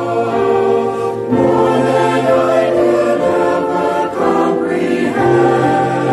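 Mixed choir of men's and women's voices singing a slow hymn in harmony, with sustained chords that change about every two seconds.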